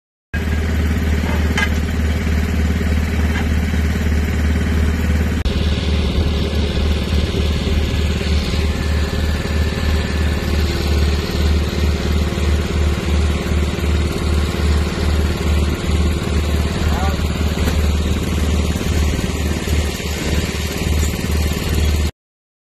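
Vermeer D10x15 Navigator horizontal directional drill rig running steadily, its diesel engine giving a deep, throbbing low drone throughout.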